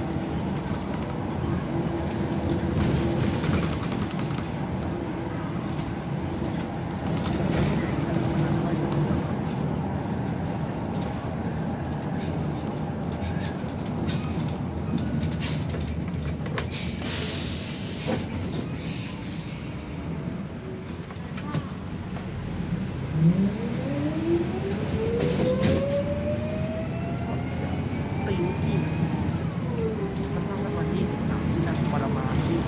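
City bus engine and road noise heard from inside the cabin, a steady running rumble with a short hiss a little past halfway. About 23 seconds in, the engine note climbs in pitch as the bus speeds up.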